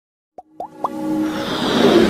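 Logo-intro sound effects: after a short silence, three quick rising blips about half a second in, then a swelling rush with held musical notes that builds in loudness.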